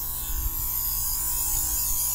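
Presto electric knife sharpener running, its abrasive wheels grinding a long brisket slicing knife drawn through the sharpening slot under little more than the blade's own weight: a steady high-pitched grinding hiss over the motor's hum.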